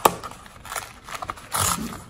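A cardboard mailer's tear strip being pulled off by hand, ripping the envelope open: a sharp snap at the start, short tearing scrapes, then a longer rip near the end.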